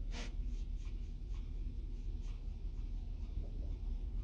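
Quiet car-cabin background: a steady low rumble with faint scratchy rustles and small ticks close to the phone microphone, the clearest one about a moment in.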